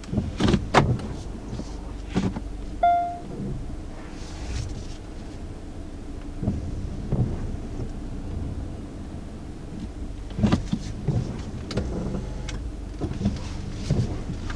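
Cabin sound of a 2019 Hyundai Santa Fe with its 2.4-litre four-cylinder engine moving off at low speed: a steady low engine hum with scattered clicks from the controls. A single short electronic chime sounds about three seconds in.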